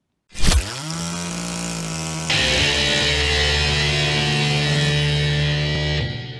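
Title-card intro sting: a sudden hit about half a second in, then a loud, steady, distorted drone. A harsh hiss joins it a little after two seconds in, and the drone cuts off just after the end.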